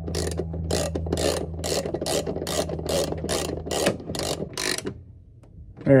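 Hand ratchet wrench clicking in short, evenly spaced back-strokes, about two to three a second, as it turns a visor-mount bolt into a nut plate; the clicking stops about five seconds in. A steady low hum runs underneath for the first four seconds.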